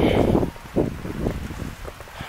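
Wind rumbling on a handheld phone microphone, loudest for about the first half second and then lower and gusty.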